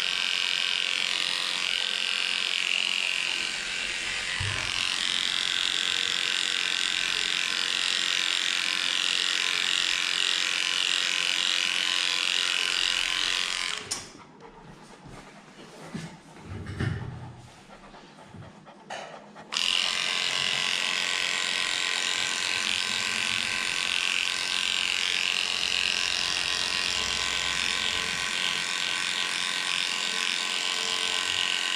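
Cordless electric dog clipper running steadily, a high even hum as it cuts through matted fur. It switches off suddenly about fourteen seconds in, then starts again about five seconds later.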